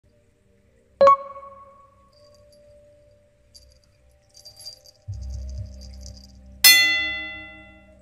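Two bright bell-like chimes, one about a second in and a louder one near the end, each ringing out and fading, with faint light jingling between them and a low hum coming in at about five seconds.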